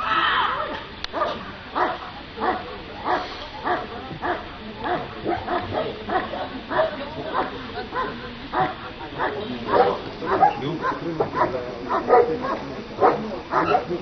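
German Shepherd dog barking steadily and repeatedly at the helper, about two to three barks a second, while it guards him in protection work.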